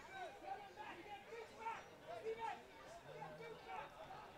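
Faint chatter of several voices from the players gathered on the pitch.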